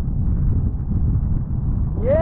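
Wind buffeting the microphone: a loud, steady low rumble with no distinct tones.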